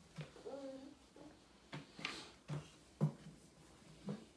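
A series of light knocks and bumps from a small wooden chair as a toddler climbs onto it, the loudest about three seconds in. A brief wavering vocal sound comes early on.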